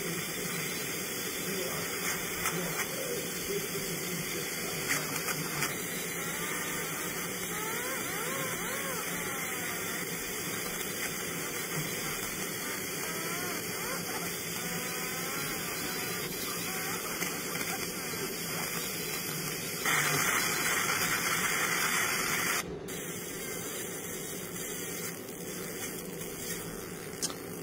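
Laser marking machine engraving a metal dog tag, marking the black outline of a colour design: a steady hiss, louder for about three seconds near the end and then dropping suddenly.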